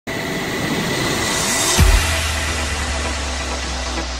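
Logo-intro sound design: a rushing whoosh swells with a rising pitch, then a deep bass impact hits a little under two seconds in and leaves a low held drone.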